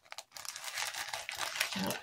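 Packaging of a small punch needle kit crinkling and rustling as it is handled, a dense crackle that starts a moment in and stops near the end.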